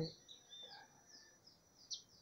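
Faint bird chirps: a few short, high, curving notes scattered through a quiet stretch, with the end of a man's spoken word at the very start.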